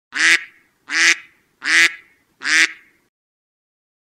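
Recorded duck quacks, four in a row about three-quarters of a second apart, played as a sound effect over a team logo.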